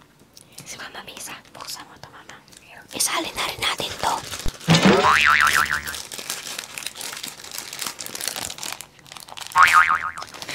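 Small plastic snack packets crinkling and rustling close to a clip-on microphone, with many small clicks as fingers work the plastic. A loud tone rises and then warbles about five seconds in, and a shorter warble comes near the end.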